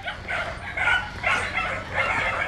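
Dogs barking in a run of short, high calls, over the low steady running of a pickup truck's engine.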